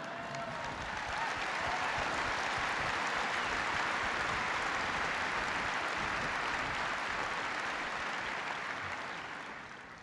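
A large audience applauding. The clapping builds over the first second or two, holds steady, and fades away near the end.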